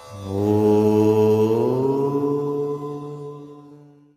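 Logo-intro music: one long, low chanted vocal tone that comes in loud just after the start, rises a little in pitch about halfway, then fades away at the end.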